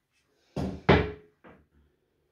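An insect specimen display case being opened and handled. A bump about half a second in is followed closely by the loudest sharp knock, then a lighter knock.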